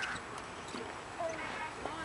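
Faint distant voices over outdoor background noise, a few short fragments in the second half.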